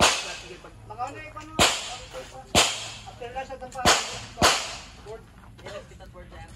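Five sharp handgun shots at uneven intervals, each with a short echoing tail, fired elsewhere on a practical pistol range.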